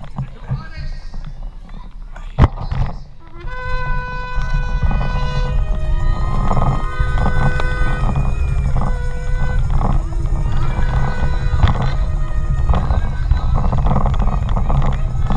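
Wind buffeting the action-camera microphone of a moving bicycle, with a single sharp knock about two and a half seconds in. From about three and a half seconds in, music with long held notes comes in over the wind.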